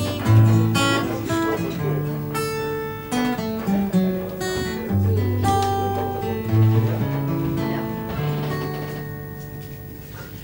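Acoustic guitar played solo, strummed and picked chords over a moving bass line; near the end the last chord rings and fades away.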